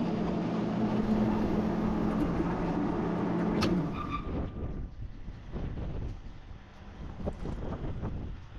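Electric-driven grain conveyor auger and bin unload running with a steady hum, switched off about three and a half seconds in: a click, then the motor's pitch drops away as it stops. Afterwards, footsteps crunch on gravel.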